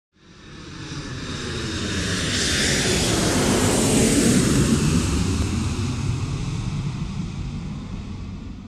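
A jet aircraft flying past. Its noise swells up from nothing, is loudest about halfway through with its pitch sweeping down as it passes, then fades away.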